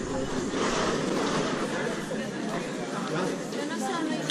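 Chatter of passers-by: several voices talking at once and overlapping, with no single clear speaker.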